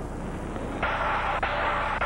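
Cartoon crash sound effect of a tow truck ramming a taxi: a sudden burst of crashing noise about a second in that carries on as a steady, noisy clatter.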